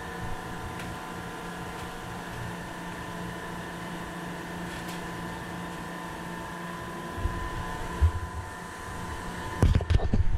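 A steady mechanical hum holding several fixed tones, like a fan or air-conditioning unit running. A few low thumps come in near the end.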